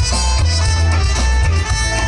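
Live band playing upbeat Latin dance music on congas, electric guitars, bass and drum kit, loud and steady with a heavy bass line.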